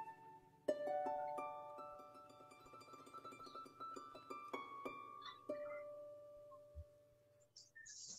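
Faint, slow background music of plucked-string notes, harp-like, that enter one by one and ring on as they fade. It drops away to near silence shortly before the end.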